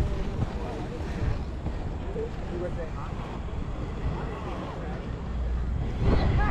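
Inline skate wheels rolling over asphalt and wind on the microphone, a steady low rumble, with faint voices in the background.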